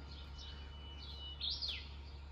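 A bird calling: a thin, steady, high whistle, then about a second and a half in a quick note that rises and drops sharply, over a faint low steady rumble.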